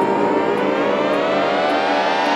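Electronic music: a siren-like synthesizer riser, a tone rich in overtones climbing steadily in pitch, over steady low notes.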